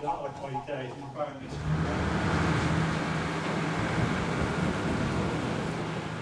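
Small river car ferry's engine running with a steady low drone, coming in about one and a half seconds in.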